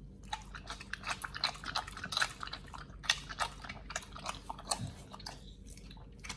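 A pit bull chewing and biting raw meat, with a quick, irregular run of wet clicks and crunches from its jaws that thins out near the end.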